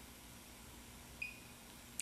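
Quiet room tone with a faint steady hum, and one short, high electronic beep just over a second in.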